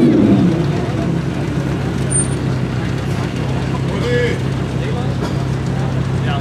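Audi R8 V10 Plus's 5.2-litre V10 idling steadily, after the tail of a rev falls away in the first half second.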